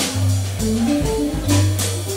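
Live jazz trio playing: a single-note electric archtop guitar line over bass notes and drums, with a few cymbal strokes.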